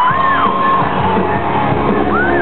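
Live rock band playing at full volume, recorded from the audience. Drums and bass come in hard right at the start. Voices yell over the music.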